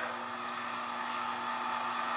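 Room tone: a steady hiss with a faint, even hum underneath.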